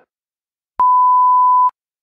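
WWV time signal's minute tone: a single steady, pure high beep lasting just under a second, marking the top of a new minute.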